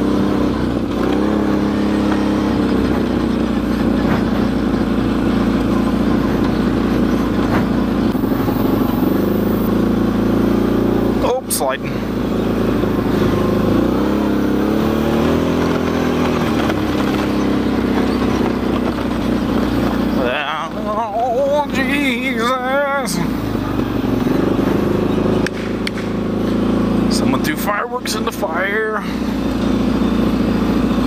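A vehicle's engine running as it drives through mud, its revs rising and falling. A wavering high sound comes twice, about two-thirds of the way in and again near the end.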